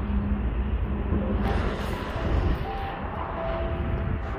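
Wind buffeting the microphone outdoors: a steady low rumble with a soft hiss.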